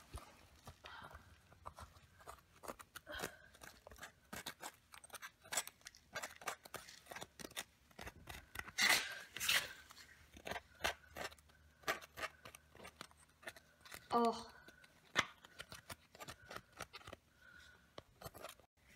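A thin metal pick scraping and prying caked grease and grime from around a motorbike's front sprocket: irregular small scratches and clicks, with a louder cluster of scrapes about nine seconds in.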